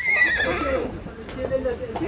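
Horse whinnying: one long trembling call that starts high and drops lower, lasting about two seconds.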